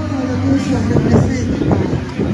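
Chevrolet pickup truck engine running steadily at low speed as it rolls past close by, with voices over it.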